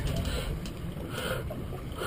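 Steady low rumble and hiss of a small fishing boat on the open sea, with no distinct events standing out.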